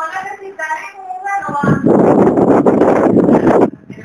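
A high voice singing or calling in short pitched phrases. It is cut off about a second and a half in by about two seconds of loud, rough noise, the loudest part, which stops shortly before the end.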